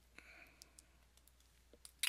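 Near silence: room tone with a few faint, separate clicks.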